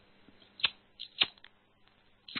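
A few short, sharp clicks, about four spread unevenly over a second.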